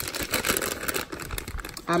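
A plastic bag of shredded mozzarella crinkling as it is handled: a dense run of small crackles.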